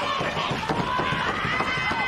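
Live pro wrestling match sound: spectators' and wrestlers' voices shouting and calling out, some held high-pitched calls, over scattered thuds from the ring.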